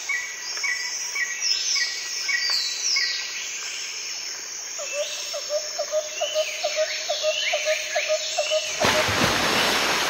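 Several birds chirping and calling, with short sweeping notes repeated high up and a rapid run of lower notes from about halfway in. A steady hiss of noise rises near the end.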